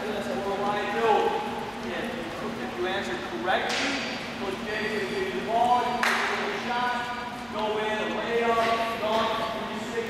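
A man's voice talking to a group in a gymnasium, with two sharp knocks about four and six seconds in.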